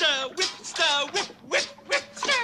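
Wookiee vocalizations: several short, high, moaning calls in quick succession, each falling in pitch.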